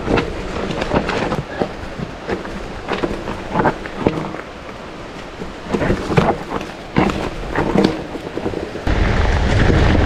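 Mountain bike descending a rough dirt singletrack: tyres on dirt and roots with repeated knocks and rattles from the bike over the bumps. About nine seconds in, a steady low rumble of wind on the microphone comes in suddenly and stays.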